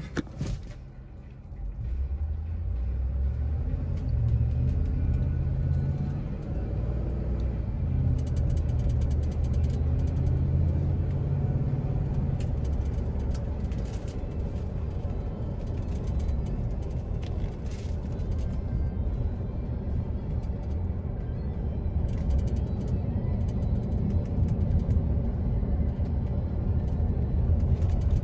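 Ford F-150 pickup heard from inside the cab as it pulls away and the automatic transmission shifts up through the gears, the engine note stepping with each shift. It then settles into a steady low engine and tire drone cruising at around 40 mph.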